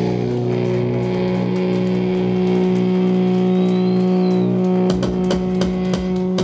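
Live metal band holding one long ringing chord on distorted electric guitars and bass at the end of a song, with a burst of drum and cymbal hits about five seconds in.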